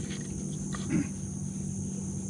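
Insects droning steadily at a high pitch in the garden, with a short low grunt about a second in.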